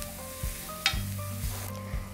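Onion-tomato masala frying in a stainless steel pan, a steady sizzle as a steel spoon stirs it, with one brief scrape a little under a second in.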